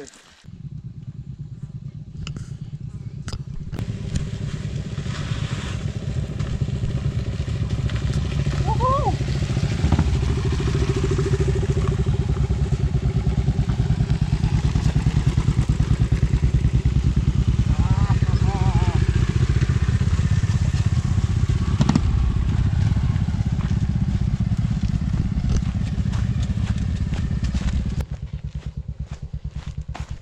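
Royal Enfield Classic 500's single-cylinder engine running with a rapid, even beat, growing louder over the first ten seconds. Brief voices sound over it.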